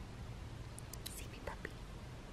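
Brief, faint whispering about a second in, over a low steady hum.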